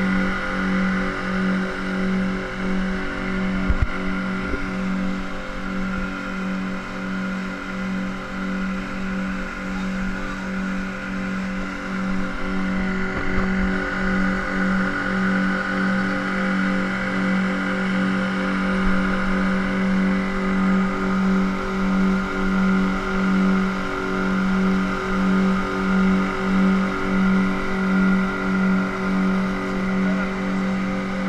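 Outboard motor of an open boat running steadily at speed, a continuous drone with a regular throb, over the rush of water and wind.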